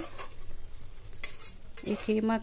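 Metal spoon stirring thick mutton keema in an aluminium pressure cooker pot, scraping and clinking lightly against the pot's sides.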